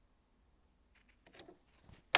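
Near silence, then a few faint short snips of scissors cutting small pieces of fabric in the second half.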